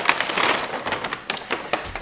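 Paper shopping bag rustling and crackling as a hand rummages inside it and pulls out a sweater, a run of quick, irregular crinkles.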